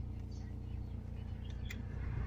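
Car engine idling steadily, heard from inside the cabin, with a single light click near the end.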